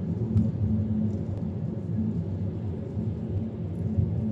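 Steady low rumble of road and engine noise heard from inside the cabin of a moving vehicle.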